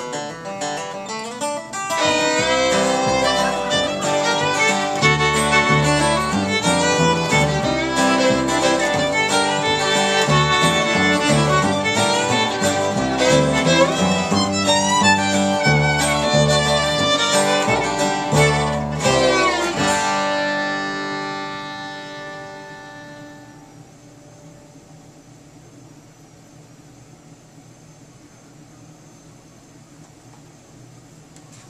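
A small acoustic string band of fiddle, acoustic guitar and upright bass plays a short tune, coming in fully about two seconds in. It stops on a final chord about twenty seconds in that rings out over a few seconds, leaving only low room tone.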